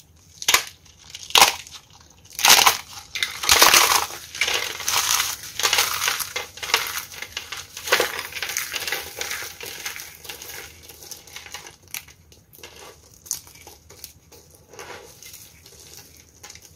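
A dry, crunchy soap flower crushed between the fingers: a few sharp crunches, then a dense run of crackling as it crumbles into flakes, thinning to scattered crackles toward the end.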